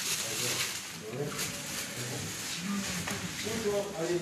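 Indistinct voices talking, with a rustle of plastic bags being handled.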